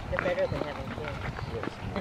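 Footsteps walking on a concrete path, with indistinct voices close by.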